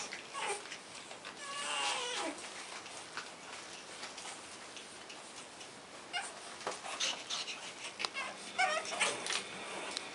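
Pug puppies whining: a drawn-out whine that falls in pitch about two seconds in, and another wavering whine near the end, with light clicks and scuffles in between.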